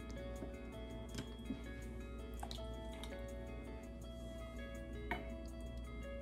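Olive oil trickling from a glass bottle into a stainless steel measuring cup, a faint liquid dribble with a few light ticks, under soft background music with long held notes.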